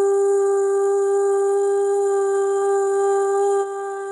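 A woman's voice holding one long, steady meditative tone on a single pitch, a sustained 'ooh', growing softer about three and a half seconds in.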